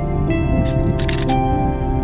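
Soft background music with sustained tones, and about a second in a short burst of clicks from a Canon EOS 250D DSLR's shutter firing.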